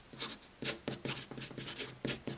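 Marker pen writing on paper: a quick run of short, scratchy strokes, about five a second, as a word is written out.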